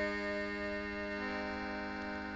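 Slow instrumental folk music: sustained chords held on reed or organ-type instruments, shifting to a new chord about a second in.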